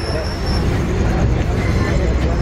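Passenger express train moving at low speed, heard from aboard a coach: a steady low rumble of wheels and running gear, with a brief high thin squeal in the first half second.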